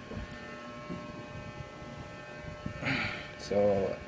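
A steady electrical hum with several thin high tones in a small room during a pause in speech; a man says "So" near the end.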